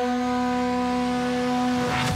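A long horn blast held on one steady low note, ending abruptly near the end.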